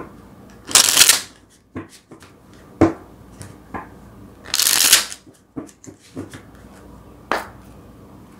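A deck of tarot cards being shuffled by hand: two brief rushes of shuffling sound, about a second in and again near the middle, with light clicks and taps of the cards in between.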